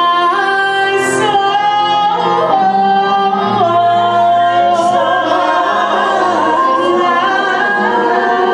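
Live gospel singing: a woman's solo voice holds long notes that step up and down, over keyboard accompaniment with backing singers.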